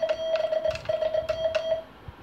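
Semi-automatic telegraph key (a Vibroplex-style bug) sending a fast run of dots, heard as a near-continuous high beep of the CW sidetone for almost two seconds, with a brief break just under a second in. Sharp mechanical clicks from the key's lever and contacts sound over the beep.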